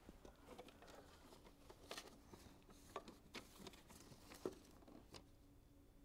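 Near silence in a small room: faint, scattered taps and scratches of children's pencils on paper worksheets at a table, over a faint steady hum.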